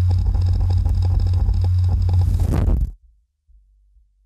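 Loud, deep cinematic rumble with a crackling texture that cuts off suddenly about three seconds in, leaving a faint low hum.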